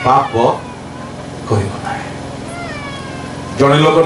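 A man preaching in Odia into a handheld microphone, his voice amplified. He breaks off for about three seconds in the middle, leaving only faint background sound, then resumes.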